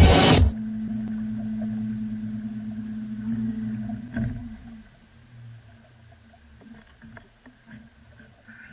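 Small boat's motor running with a steady hum, then switched off about four seconds in, its pitch sagging as it winds down. After that, only faint small clicks and water sounds.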